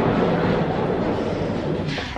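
Casters of a rolling chair rumbling steadily as it slides across the floor.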